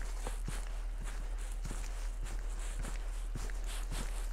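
Footsteps on a dirt path scattered with dry leaves, a soft crunch about every half-second, over a steady low rumble.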